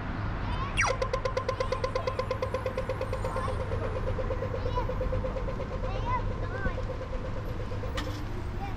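Australian audio-tactile pedestrian crossing signal: a quick falling 'laser' sweep, then steady rapid ticking that lasts until nearly the end. This signals the walk phase, when the green man comes on. Birds chirp faintly over traffic hum.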